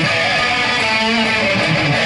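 Gibson Firebird Zero electric guitar played through a Marshall amplifier: strummed chords and shifting notes that ring on without a break.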